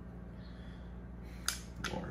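Two sharp clicks near the end, about a third of a second apart, as the metal shower-head screen and the plastic body of a Wacaco portable espresso maker are fitted together by hand, over a low steady hum.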